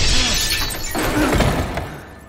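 Window glass smashing with a loud, sudden crash, a second crash about a second in, then tapering off.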